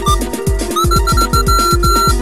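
Experimental electronic music played on browser-based online instruments. A fast beat of low thuds, each dropping in pitch, runs under a steady low synth tone. A gliding tone breaks off at the start, and a high synth note beeps in short repeated pulses from a little under halfway through.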